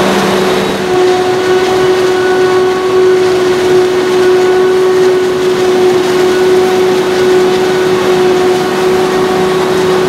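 Claas Jaguar 990 forage harvester chopping standing corn under full load: its MAN V12 engine and chopping gear make a loud, steady mechanical din with a high whine held at one pitch, which firms up about a second in. The tractor running alongside adds to the engine noise.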